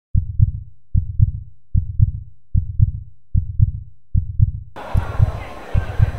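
A heartbeat sound effect: low double thuds, lub-dub, repeating evenly about every 0.8 s. About three-quarters of the way through, faint outdoor background from the field joins in beneath it.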